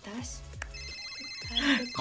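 A high, steady electronic ringing tone begins just under a second in and holds, with short bits of talk around it.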